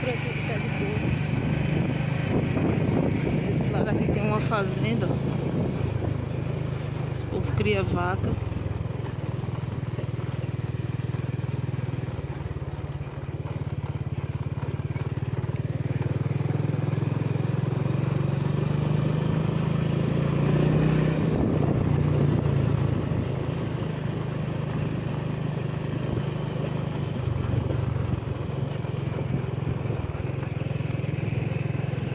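Small motorcycle engine running under way, with wind and road noise rushing over the microphone; the engine note climbs briefly about twenty seconds in, then settles. A voice is heard briefly about four and eight seconds in.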